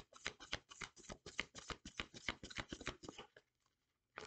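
Tarot deck being shuffled by hand: a quick run of soft card-on-card slaps, about seven a second, stopping shortly before the end.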